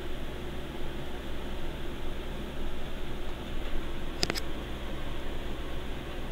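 Steady background hiss and low hum, with a quick double click a little after four seconds in from a computer mouse, as a web form is submitted.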